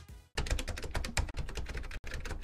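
Keyboard typing sound effect: a rapid, uneven run of clicks starting about a third of a second in, accompanying on-screen title text as it appears.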